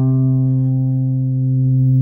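Guitar holding a single low C, the last note of a lick over a C major seventh chord, ringing steadily with little decay.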